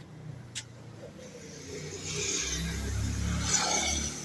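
A car driving past on the street, its engine rumble and tyre hiss growing louder over about three seconds and peaking near the end. A short click about half a second in.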